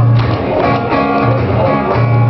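Live acoustic guitar strummed, its chords ringing over a sustained low bass note, with no singing.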